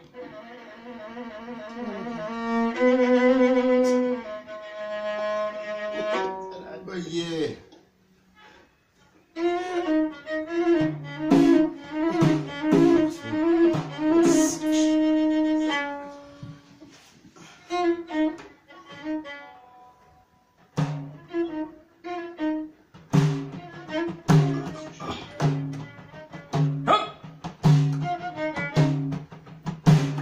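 A violin bowed upright on the knee plays a wavering folk melody. After a short pause of about two seconds it picks up again with regular frame-drum beats, and the drums keep a steady beat through the last third.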